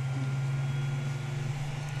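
Dräger X-plore 7300 powered air purifying respirator's blower unit running steadily after being switched on, a low even hum.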